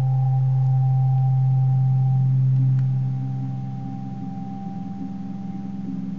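Sustained ambient drone music: a strong low steady tone with thin, quieter held tones above it. About three seconds in the low tone fades and a softly pulsing middle tone carries on.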